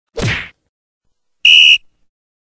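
Editing sound effects: a quick whoosh about a fifth of a second in, then, about a second and a half in, a short, loud, shrill whistle tone lasting about a third of a second.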